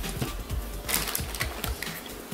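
Background music with a quick, regular beat, with a few light clicks and rustles from doll clothes being handled and laid down.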